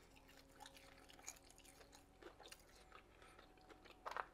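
Near silence with faint chewing of a sweet potato fry: a few soft, scattered mouth clicks.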